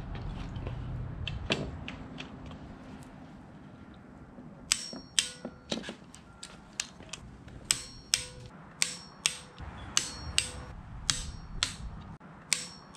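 Ratchet torque wrench clicking in short repeated runs as it tightens the coolant pipe's bolts to 9 Nm. The sharp metallic clicks, each with a faint ring, start about five seconds in.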